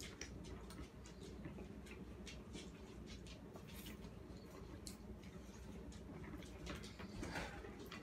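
Faint eating sounds: forks tapping and scraping on plates while noodles are twirled and eaten, heard as small scattered clicks over a steady low hum.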